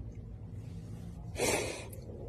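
A woman's audible breath, a single noisy intake lasting about half a second past the middle, over a faint steady low hum.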